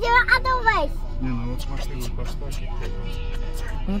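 A child's high, wavering squeal in the first second, over music playing in the car, with a short run of sharp clicks around the middle.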